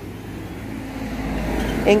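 A low rumbling noise with a faint hiss, swelling louder toward the end.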